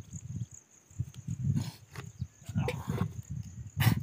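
Wind buffeting the microphone outdoors: an irregular low rumble that swells and drops, with a short hissier gust in the middle and a sharp click just before the end.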